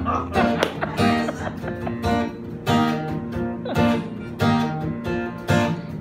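Acoustic guitar strumming chords in a steady rhythm, about two strokes a second.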